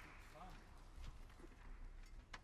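Near silence: faint stage room tone with a few soft taps and knocks, the handling and footstep noise of a musician moving about the stage.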